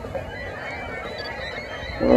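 A distant flock of water birds calling: many short, overlapping calls, with a low rumble of wind underneath.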